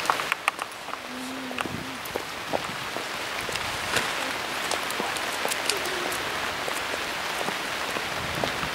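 Steady rain falling, an even hiss with many scattered sharp ticks of drops landing.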